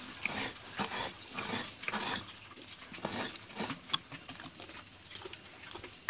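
Fresh coconut flesh being grated by hand against a metal scraper, a run of short scraping strokes about two a second, sparser and quieter in the second half.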